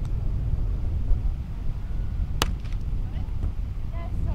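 Wind buffeting the microphone, with one sharp slap of a hand striking a beach volleyball about two and a half seconds in.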